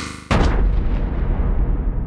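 Cinematic logo-intro sound effect: a whoosh cuts into a heavy boom about a third of a second in, which then rumbles and slowly dies away.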